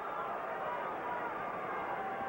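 Crowd at a boxing arena: a steady hubbub of many voices.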